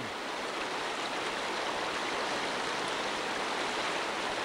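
Fast, muddy floodwater rushing through a stream channel, a steady, even rush of water.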